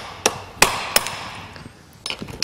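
Hammer tapping a metal pin to drive the coupling-head bolt back inside the draw tube of a Bradley trailer coupling: three taps about a third of a second apart in the first second, each ringing briefly.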